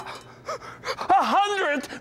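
A man's wordless cry of surprise, a drawn-out gasp whose pitch rises and falls, starting about a second in after a brief lull.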